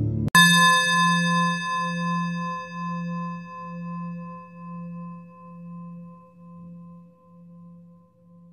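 A singing bowl struck once about a third of a second in, ringing on and slowly fading with a gentle wavering beat in its low tone.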